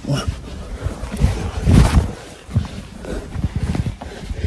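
Rustling and rubbing of a carpet being pulled over the body, with bumps and scraping of fabric and an arm against the phone's microphone; the loudest rustle comes about two seconds in.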